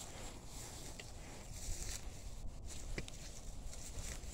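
Faint footsteps on snow, with a few soft crunches about a second and three seconds in, over a low steady rumble.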